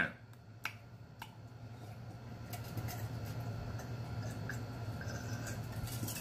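Drinking from a glass: a few small clicks in the first second or so, then faint, steady sounds of gulping and swallowing.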